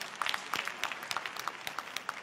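Audience applauding: many hands clapping at once in an irregular, continuous spatter.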